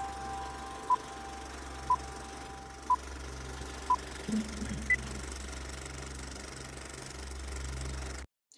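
Film-leader countdown effect: a short beep once a second, five in a row, then a single higher beep about a second later. A steady low mechanical hum runs underneath and cuts off suddenly at the end.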